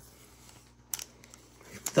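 Two short sharp clicks about a second apart from trading cards being handled, with low room noise between them; a man's voice starts right at the end.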